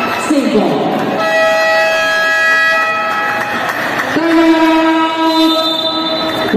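Two long, steady horn blasts of about two and a half seconds each, the second lower in pitch than the first, over the noise of a busy gym.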